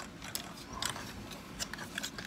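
Hard plastic of a Transformers Bumblebee action figure clicking and rubbing as it is handled and its jointed parts are moved: a few light, scattered clicks.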